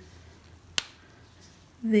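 A single sharp click, about a second in, of the cap coming off a Faber-Castell Albrecht Dürer watercolour marker.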